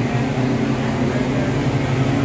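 Steady machinery hum on a factory floor: an even, unbroken low drone with a hiss over it.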